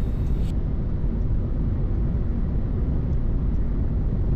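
Steady road noise inside a car cruising at speed on a concrete expressway: tyre and wind noise, heaviest in the low end, with no changes.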